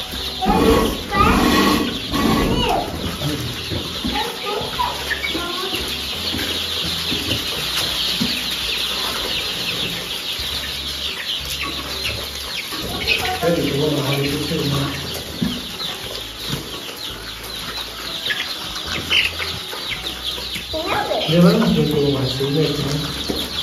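A large flock of young pullets calling continuously, a dense chorus of high-pitched peeps and clucks.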